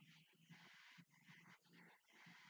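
Near silence, with a faint, muffled voice talking underneath: dubbed-down anime dialogue played very quietly.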